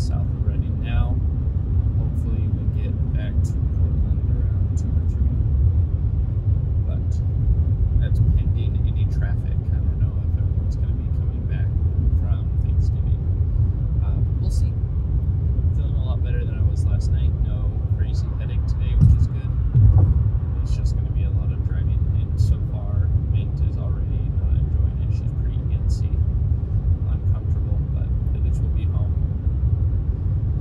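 Steady low road and engine rumble inside a car's cabin at highway speed, with two brief louder bumps about two-thirds of the way through.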